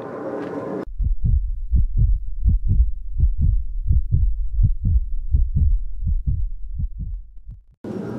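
Heartbeat sound effect: an even run of low thuds that starts just under a second in and fades out shortly before the end.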